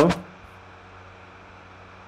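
The end of a spoken word, then steady background hiss with a faint low hum: room tone.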